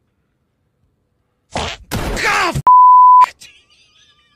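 A sudden loud yell, falling in pitch, as a jump scare about a second and a half in. It is followed at once by a loud, steady single-tone censor bleep lasting about half a second.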